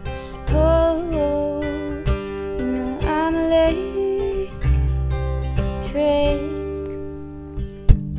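Acoustic guitar strummed steadily in a slow pop-folk accompaniment, with a young woman's voice singing drawn-out, gliding notes over it three times. A sharp percussive click near the end is the loudest sound.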